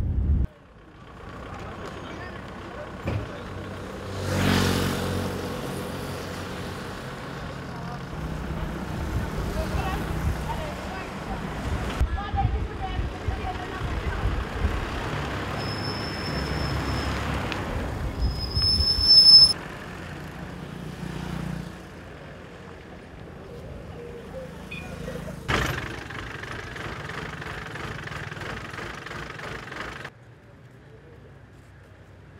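Town street ambience: motor traffic passing, including a louder vehicle going by about four seconds in, with voices in the background. Two brief high whistling tones sound about halfway through, and a sharp knock comes near the end.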